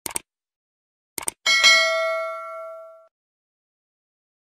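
Subscribe-button animation sound effect: two quick clicks, two more clicks about a second later, then a single bell ding that rings out and fades over about a second and a half.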